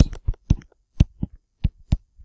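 Stylus tapping and knocking on a tablet screen during handwriting: a string of about eight short, sharp taps, two to four a second, with silence between.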